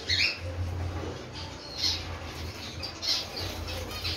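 Cockatiels giving several short, high calls while feeding together, the first falling in pitch, over a steady low hum.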